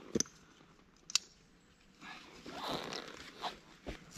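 Rock straps being cinched down over firewood on a motorcycle's rear rack: two sharp clicks, then a scraping rustle of about a second and a half as a strap is pulled tight over the load.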